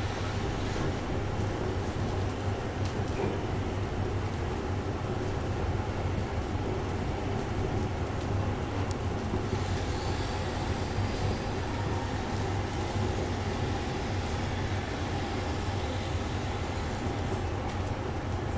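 Burning clusters of wooden matchsticks: a steady low rumble of flames with scattered faint crackles.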